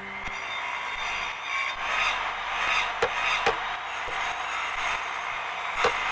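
Steady scraping and rasping on wood, with a few sharp knocks through it; near the end, hammer blows on nails.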